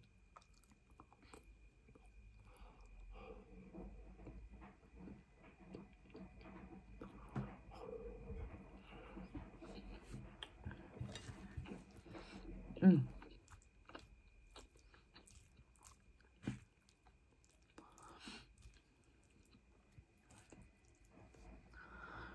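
Close-up eating sounds: soft, quiet chewing of a mouthful of curry, rice and chips, with small clicks of a wooden spoon against the plate and one brief louder vocal sound a little past halfway.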